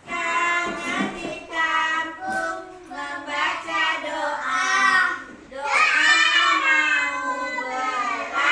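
A group of young children singing a song together in chorus, phrase after phrase with brief breaths between.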